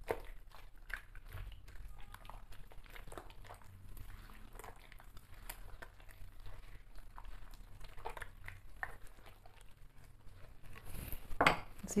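A hand squishing and working eggs into creamed butter and sugar in a ceramic bowl, with many small irregular clicks and taps of fingers against the bowl. A voice starts speaking near the end.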